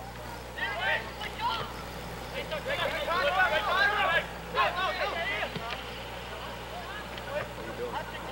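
Indistinct voices in several spurts of talk or calls, loudest in the middle, too unclear to make out words, over a steady low hum.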